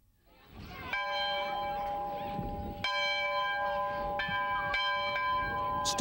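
A large bell rung repeatedly, about five strokes at uneven intervals. Each stroke is a steady ring of several tones that carries into the next, over a faint outdoor background. It is a schoolhouse bell calling students in.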